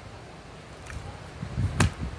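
A wooden color guard rifle landing in the hand on the catch of a toss: one sharp smack near the end, over a low rumble of wind on the microphone.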